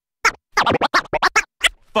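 Turntable scratching on a vinyl record, chopped in and out with the mixer's crossfader: one short stroke, then a fast run of about eight sharp cuts lasting about a second, then two single strokes near the end, with silence between and no beat underneath.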